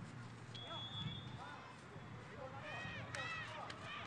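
Faint pitch-side ambience of a youth football match: distant, high-pitched shouts of children on the field, a cluster of them near the end.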